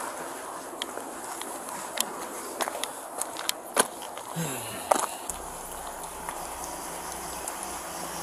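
Scattered clicks, knocks and footsteps on gravel as a car's passenger side is searched, with a steady low hum coming in about five seconds in.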